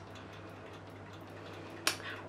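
Quiet room tone with a steady low hum, broken by a single short click near the end.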